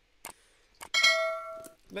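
A couple of faint clicks, then a single bright metallic ding about a second in that rings for under a second and fades out.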